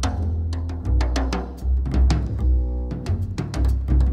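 Instrumental band music with no singing: deep bass notes under drums and hand percussion, with plucked string notes.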